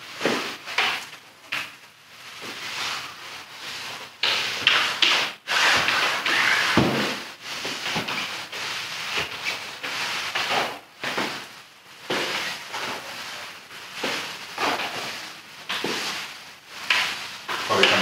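A microfiber applicator mop swishing in irregular strokes over wet concrete as liquid densifier is spread, with the hiss of a hand pump-up sprayer wetting the floor.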